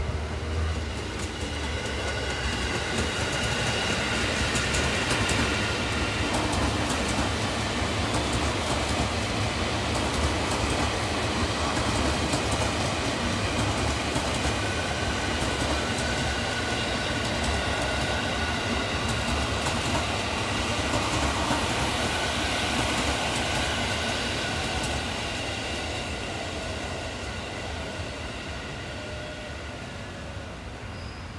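An electric commuter train passing on a nearby track: a continuous loud rumble and rattle of wheels on rails, with steady high whining tones over it. It fades away over the last few seconds.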